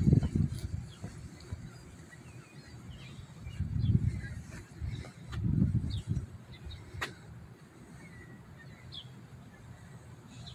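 Outdoor ambience with a few brief swells of low rumble and a single sharp click about seven seconds in, under faint bird chirps.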